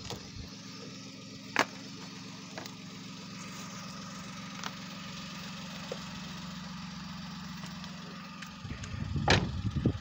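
A car engine idling with a steady low hum, and a sharp click about a second and a half in. Near the end the hum stops and rough handling and movement noise takes over, with a loud knock, as the person gets out of the car.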